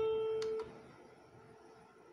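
A single steady pitched tone with a faint click near its end, cutting off abruptly about half a second in.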